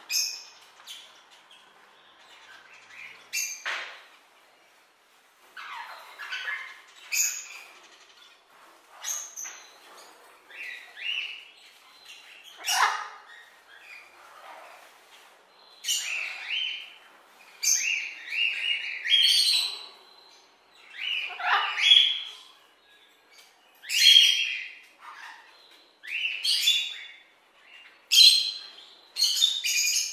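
Parrots calling: short, harsh squawks and chirps repeated every second or two, growing louder and more frequent about halfway through.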